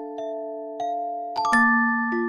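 Background music played on a music box: a slow melody of single plucked notes that ring on, with a louder chord of several notes about a second and a half in.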